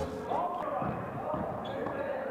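Basketball game sound in a large sports hall: a ball bouncing on the court with short knocks, and players' voices calling out, echoing in the hall.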